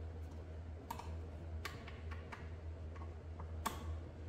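A few sharp metallic clicks of a hand tool working the mounting bolts of an e-bike's rear disc brake caliper as they are tightened, the loudest near the end. A steady low hum runs underneath.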